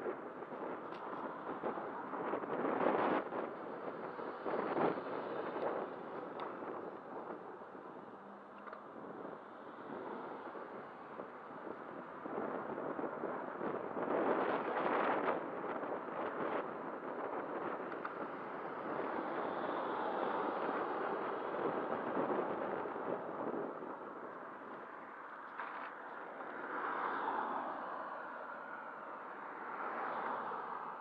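Wind rushing over the microphone of a camera on a moving bicycle, with road traffic passing; the noise swells several times, loudest a few seconds in and again about halfway through.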